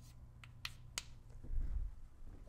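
Chalk tapping against a blackboard: three sharp clicks within the first second, followed by low, dull thuds near the end.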